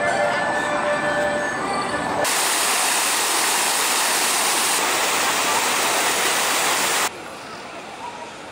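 Carousel music with held notes for about two seconds, then a loud, even rush of fountain jets spraying water. The spray cuts off suddenly about seven seconds in, leaving a much quieter open-air background.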